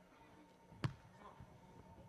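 A single sharp slap of a hand striking a beach volleyball about a second in, the serve that opens the rally, over otherwise near-silent court sound.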